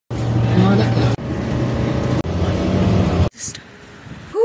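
Steady engine drone and road noise inside a moving city bus, in three abrupt cuts of about a second each. It then drops to a much quieter passage with one brief hiss.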